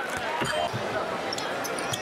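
Basketball game sound from the arena floor: the ball bouncing on the hardwood court, with short sharp clicks and squeaks over a steady crowd hubbub.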